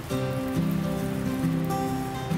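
Fat sizzling and crackling on a hot sandwich-press plate, over background music with held notes.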